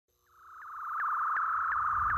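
Synthesized electronic intro sound effect: a steady high tone that swells in from silence about half a second in, broken by a short chirp about three times a second.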